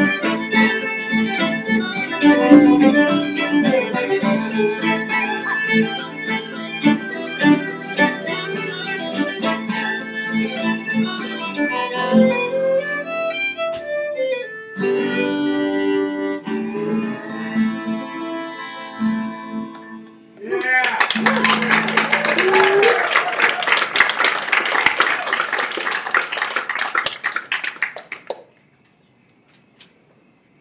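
Live Celtic tune on two fiddles, acoustic guitar and piano, which ends about two-thirds of the way through. Audience applause follows for several seconds, then stops abruptly shortly before the end.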